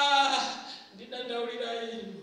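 A woman singing unaccompanied into a microphone, holding two long notes: the first ends about half a second in and the second starts about a second in.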